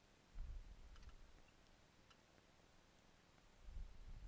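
Near silence, with a faint low rumble about half a second in and again near the end, and a few faint ticks.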